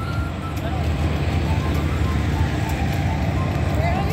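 Wind buffeting an open phone microphone: a loud, uneven low rumble with a few faint thin tones above it.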